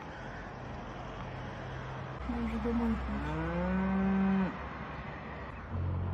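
A cow mooing: a short call about two seconds in, then a longer moo lasting about a second and a half. A steady low rumble runs underneath.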